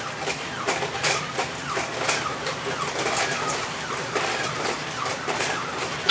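Robosapien RS Media toy robots walking: their geared leg motors whirring and their feet clicking on the floor in an even run of short clicks.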